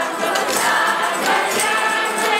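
Many voices singing together in chorus, loud and steady, with light jingling accents.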